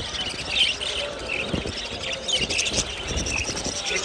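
A cage full of budgerigars chirping and chattering, with short high chirps scattered throughout over a low background rumble.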